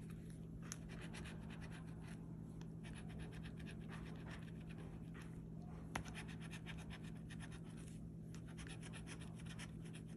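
Scratch-off lottery ticket being scraped with a handheld scratcher tool: runs of quick scraping strokes with short pauses between spots, and a sharp click about six seconds in. A steady low hum runs underneath.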